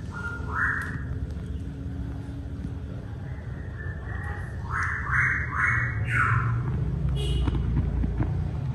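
Small electric desk fan running with a low hum, its three plastic blades spinning and then coming to a stop. Brief higher-pitched squeaks cut in, one near the start and three in quick succession a little past the middle.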